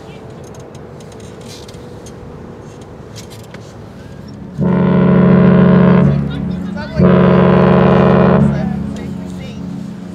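The deep ship's whistle of the cruise ship Allure of the Seas sounding two blasts of steady pitch, each about a second and a half long, the second one fading away afterwards.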